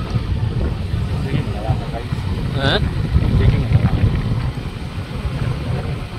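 Riding noise from a moving motorcycle: wind rushing over the microphone over the steady low rumble of the engine and road.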